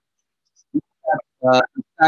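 A man's voice heard over a video call: after a brief silence, a few short, broken-up syllables that the recogniser did not catch.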